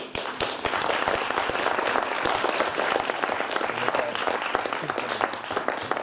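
Audience applauding: many hands clapping at once, dying away at the very end.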